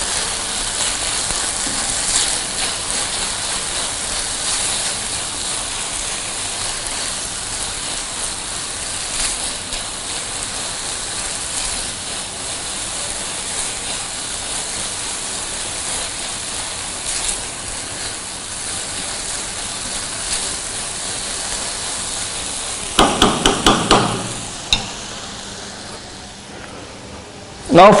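Tomato-and-onion masala sizzling in oil in a nonstick frying pan on a gas burner, steadily stirred and scraped with a silicone spatula. Near the end a quick run of about five knocks, after which the sizzle carries on lower.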